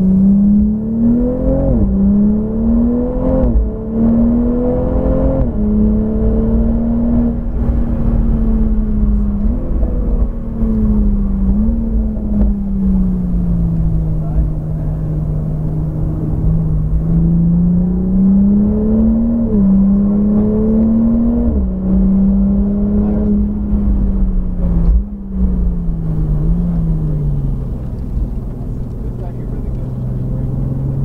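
Toyota Supra A90's turbocharged 3.0-litre inline-six driven hard on track. The engine note climbs and drops sharply at three quick upshifts in the first few seconds, then rises and falls with the throttle, with a few more sudden steps in pitch from gear changes.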